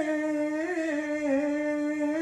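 A singer's voice drawing out the stick-dance (bo-odori) song in a long, slowly wavering held note, in a Japanese folk style.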